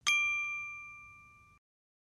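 A single notification-bell ding sound effect, struck once and ringing out with a clear bell tone that fades over about a second and a half.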